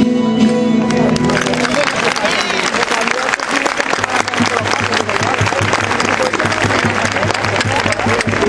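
Live folk dance music ends about a second or two in, and an audience breaks into sustained applause with voices mixed in.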